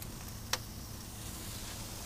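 Faint steady sizzle of meat cooking on an open barbecue grill, with one sharp click about half a second in.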